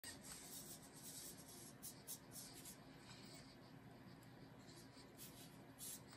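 Near silence with faint, scratchy whirring in short flurries from the 3D-printed DexHand robot hand as its motors move its fingers.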